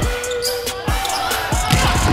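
Music plays under a volleyball rally, with a few sharp thuds in the second half as the ball is struck, ending with a spike at the net.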